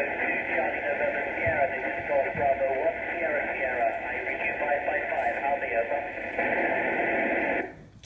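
Amateur radio receiver audio on the hall speakers: a steady hiss of static with faint, garbled voices in it while the station waits for the space station to answer. It cuts off abruptly just before the end.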